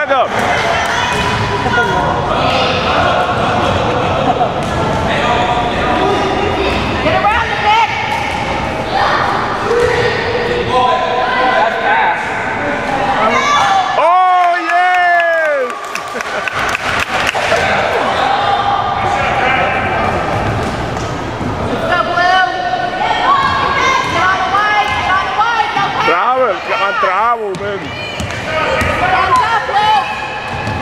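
Indoor basketball game: a ball bouncing on a hardwood court amid indistinct voices echoing in a large gym. About halfway through, one long high-pitched call sliding downward stands out.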